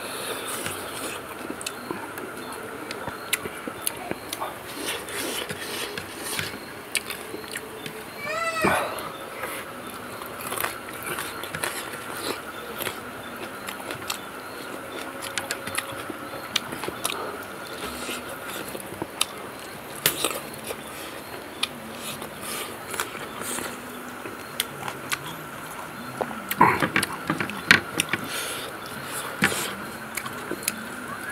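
Close-up eating sounds of rice and dried eel being eaten by hand: many small wet lip smacks and chewing clicks. A short voiced sound that bends up and down comes about eight seconds in, and a louder flurry of smacks comes near the end.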